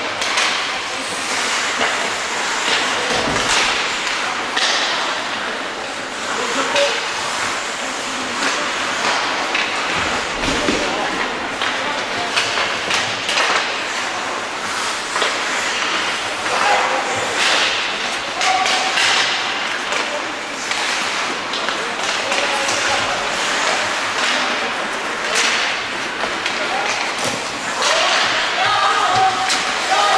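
Ice hockey play on an indoor rink: skates scraping the ice, sticks and puck clacking, and thuds against the boards, two of them heavier at about three and ten seconds in. Voices call out, more near the end.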